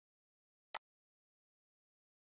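A single short mouse click in otherwise dead silence, about three quarters of a second in.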